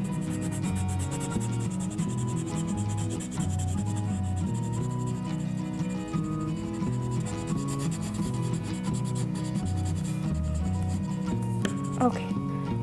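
Brown coloured pencil shading rapidly back and forth on paper, a steady scratchy rubbing. A light background tune with a stepping bass line plays under it.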